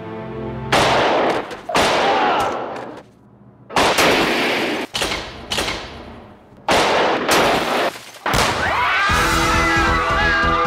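A string of loud gunshots, about six shots spaced a second or two apart, each with a long echoing tail.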